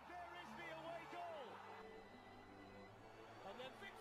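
Very faint, near-silent audio: a faint voice with steady low tones beneath it.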